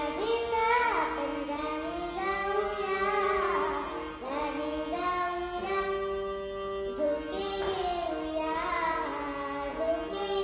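A young girl singing solo in an Indian melodic style, her voice gliding and ornamenting between notes. Steady held notes of an accompaniment sound beneath her.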